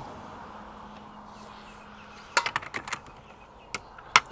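Sharp clicks and knocks from a factory roof crossbar's plastic foot being worked onto the metal roof rail: a quick cluster of clicks about two and a half seconds in, then a single click near the end.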